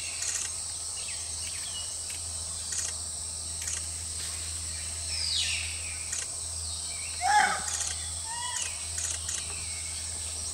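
Forest ambience: a steady high-pitched insect drone over a low hum, with scattered short bird calls including a falling whistle about halfway through. A louder single call comes about three-quarters of the way in.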